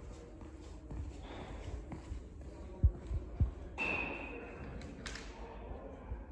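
Three dull, low thumps in quick succession about halfway through, the first the loudest, over faint room noise.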